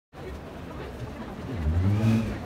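Street traffic rumble, with a motor vehicle's engine hum growing louder near the end as it approaches.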